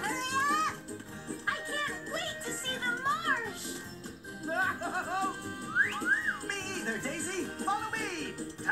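Upbeat cartoon music playing from a television, with cartoon voices and whistle-like sounds sliding up and down in pitch over it.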